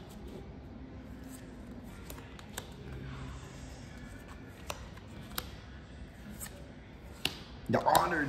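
Yu-Gi-Oh trading cards handled and flipped through by hand on a table: soft sliding with a few sharp, separate card snaps scattered through. A man's voice breaks in excitedly just before the end.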